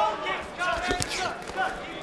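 Men talking over a kickboxing bout, with one sharp thud from the ring about a second in.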